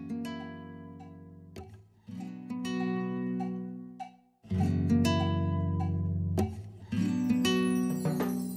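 Instrumental background music with plucked strings, moving to a new chord about every two seconds.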